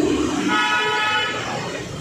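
A vehicle horn sounding one steady blast about a second long, starting about half a second in, over street traffic noise.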